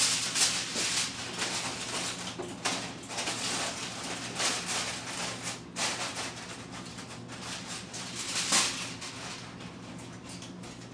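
Aluminium foil crinkling and rustling, loudest in the first second, then a few scattered rustles that fade out, over a steady low hum.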